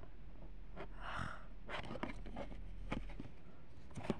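Faint handling noise: a few light clicks of fingers on a DVD and its plastic case, with a soft breath about a second in, over low room hum.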